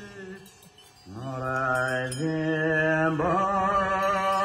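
Tibetan Buddhist Chöd liturgy being chanted. A held note fades out at the start, then about a second in a melodic chant begins on long sustained notes, stepping up in pitch twice.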